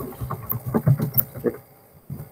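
Computer keyboard being typed on: a quick, irregular run of key clicks that stops about a second and a half in.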